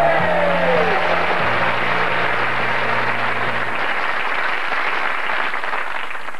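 Studio audience applauding steadily, easing off slightly near the end.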